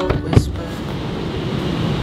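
A car's interior door handle pulled and the door latch releasing with one sharp click about a third of a second in, followed by steady rushing noise.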